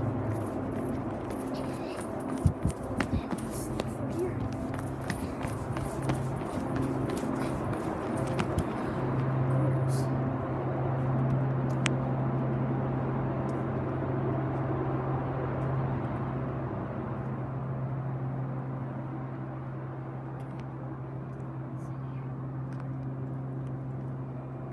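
Footsteps on a concrete floor and the rustle of a handheld phone over a steady low electrical hum. The steps and rustling die away after about nine seconds, leaving the hum on its own.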